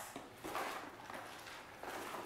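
Faint rustling and shuffling of a cardboard box and its dividers being handled, with a soft rise in noise about half a second in and again near the end.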